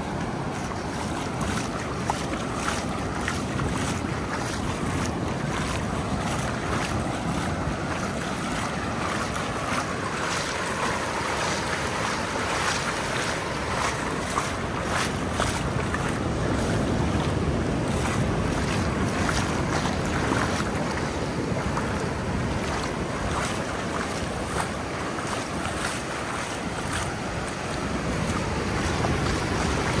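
Ocean surf rushing steadily, with wind buffeting the microphone in irregular gusts.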